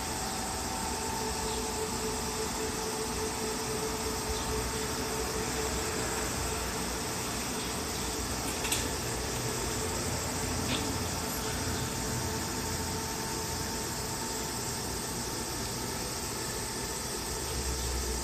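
Steady mechanical hum and hiss of background machinery, with faint steady tones and a couple of faint clicks.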